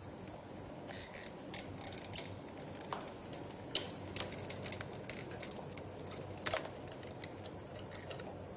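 Metal wire grill clicking and rattling against the plastic housing and louvers of a mini-split indoor unit as it is worked into place by hand: scattered light clicks, the sharpest about four seconds in and again at about six and a half seconds.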